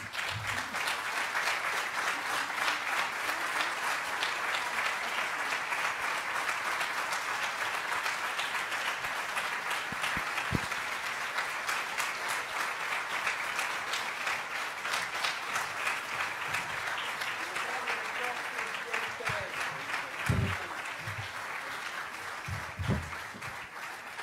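A large audience applauding without a break, a dense patter of many hands clapping that eases slightly near the end.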